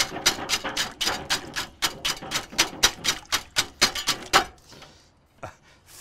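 A large wire balloon whisk beating a bowl of raw eggs, its wires rapidly clicking against the sides and bottom of a 30-quart stainless steel bowl at about six to seven strokes a second. The whisking stops about four and a half seconds in.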